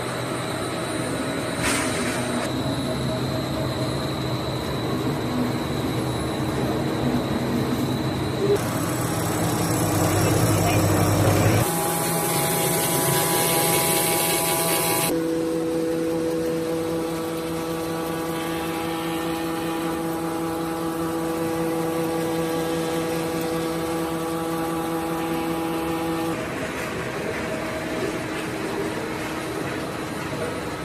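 Plastic pelletizing line running: a steady machine hum with several steady motor tones, changing abruptly a few times as different parts of the line are heard.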